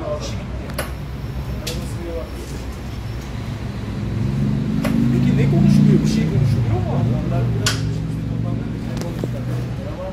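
Indistinct men's voices talking over a steady low hum, with a few sharp clicks; the voices are loudest in the middle.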